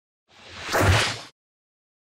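A single whoosh sound effect with a low rumble under it, swelling to a peak about a second in and then cut off sharply.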